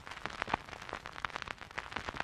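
Vinyl surface noise: the stylus riding the lead-in groove of a spinning 7-inch single, giving soft hiss and irregular crackles and pops, several a second, before the music starts.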